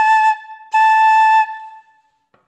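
Wooden keyed transverse flute (響笛) playing clear held notes on one pitch: a short note at the start and a longer one from just under a second in, then dying away.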